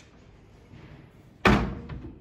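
Wooden cupboard doors pushed shut by hand: one loud bang about one and a half seconds in, then a lighter knock just after.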